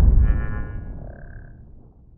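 Tail of a logo-reveal sound effect: a deep rumble fading away, with a brief bright shimmering tone over it in the first second or so.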